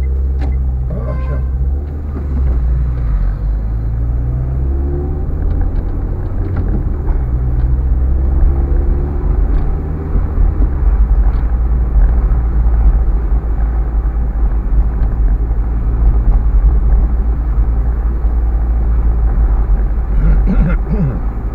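Car driving through town, heard from inside the cabin: a steady low engine and road rumble, a little louder in the second half.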